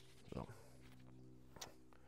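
Near silence with a faint steady hum, broken by two brief soft sounds, the louder about a third of a second in and a smaller one about a second and a half in: handling noise from untangling a binocular neoprene carrying strap.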